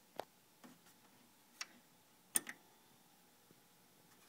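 A few faint, sharp clicks at irregular spacing over a low background hiss, the loudest a close pair about two and a half seconds in.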